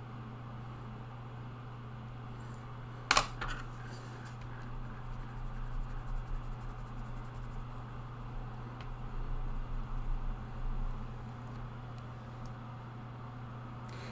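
A single sharp tap about three seconds in as a hand reaches over the watercolour paint palette, then faint soft brushing of a watercolour brush on paper, over a steady low room hum.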